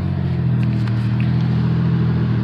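Car driving along, heard from inside the cabin: a steady low hum of engine and road noise.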